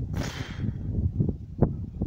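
A short whoosh transition sound effect, about half a second long near the start, as on-screen text animates in. It plays over a low, uneven background rumble, with a faint click about a second and a half in.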